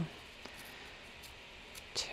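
Faint rustling and a few soft ticks of thin printed paper being torn along its edges by hand.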